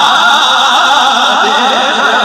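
A man's voice singing a naat, unaccompanied and loud through a microphone and PA, held in long lines that waver up and down in pitch.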